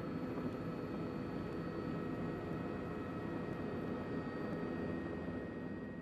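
Steady drone of aircraft engine noise, with a few faint steady tones above it.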